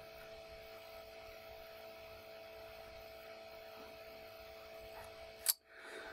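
Faint steady electrical hum with a couple of constant tones, the background of a screen recording, with a single sharp click near the end.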